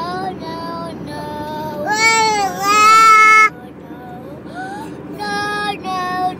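Young boy singing wordless, sliding notes in short phrases, loudest on a long held note about two seconds in. Steady car road noise lies underneath.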